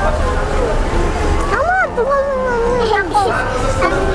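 Young children's voices talking and vocalising, high-pitched with a rising and falling call about two seconds in, over a steady low rumble.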